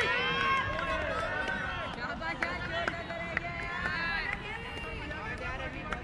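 Several young players' voices shouting and calling out across an open cricket field during play, overlapping and unclear.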